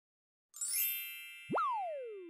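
Logo-intro sound effects: a bright shimmering chime about half a second in, then a quick upward swoop in pitch that turns at the top and slides slowly back down.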